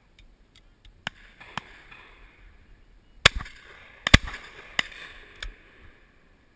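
Shotguns firing on a pheasant shoot: about seven sharp shots at irregular intervals, the two loudest a little after three and four seconds in, over a light hiss.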